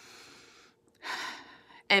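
A woman taking one deliberate deep breath: a faint breath in during the first half-second, then a louder breath out starting about a second in.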